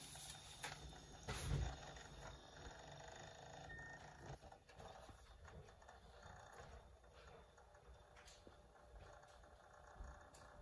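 Quiet room with handling noise: one soft thump about a second and a half in, then a few faint clicks.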